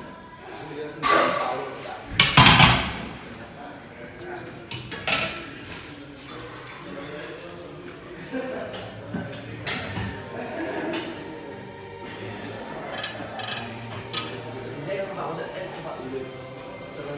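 Metal weight plates and a loaded barbell clanking against the steel of a T-bar row stand. The loudest clank comes about two and a half seconds in, after a sharp one near the first second, and a few lighter knocks of gym equipment follow.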